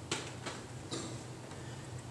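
Three faint, short clicks and rustles within the first second, over a steady low room hum.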